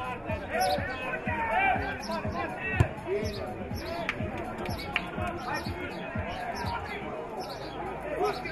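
Overlapping shouts and calls from football players and spectators, with the sharp thud of a football being kicked about three seconds in and a couple of lighter kicks a little later.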